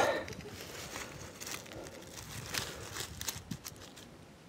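Faint rustling and crackling of dry leaf mulch as someone moves about close by, with a few light clicks and taps, most of them between about two and a half and three and a half seconds in.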